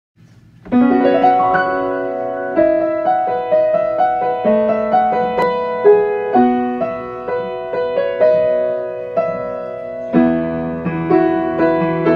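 Upright piano played solo: a gentle melody over chords, a piano arrangement of an anime ending song. It starts about a second in, and the bass grows fuller near the end.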